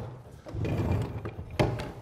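A circular saw's metal base plate sliding and scraping across a sheet of plywood, with a sharp knock about a second and a half in as the saw is handled.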